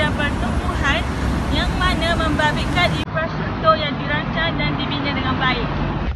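A woman talking continuously over a steady low rumble of road traffic.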